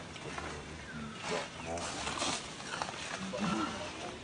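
Macaques giving scattered short calls that bend up and down in pitch, with a few sharp clicks in between.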